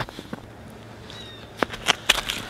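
Boots stepping on snow-covered pond ice, then a couple of sharp crunches near the end.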